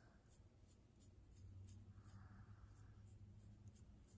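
Fingernails and a plastic comb scratching a scalp through hair, heard close up: a quick run of faint, soft scratches, a few each second.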